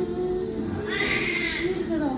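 Newborn baby crying just after delivery, one long wail about a second in and another starting near the end. A normal, healthy newborn cry.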